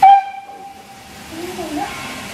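Steam locomotive whistle: one short, loud blast right at the start, its single tone fading away over about a second.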